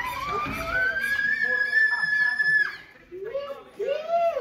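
A young child's long, high-pitched squeal: it rises and is then held for about two seconds before stopping. After a short pause come a few shorter voiced calls.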